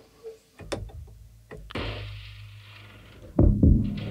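Loop playing from the Boom & Bust Kontakt sample instrument: a few sharp percussive knocks, then a sustained noisy hit over a low hum, and heavy low thuds near the end.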